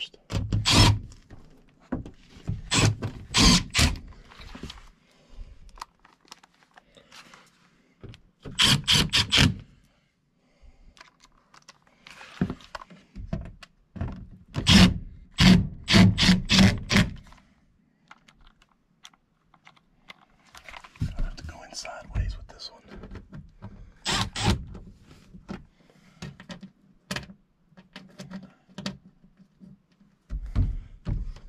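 Milwaukee cordless drill-driver driving the screws of a Bryant air handler's sheet-metal access panel, in several short bursts, with knocks and scrapes of the metal panel in between.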